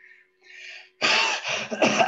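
A man coughing: a quick breath in, then two hard coughs about a second apart.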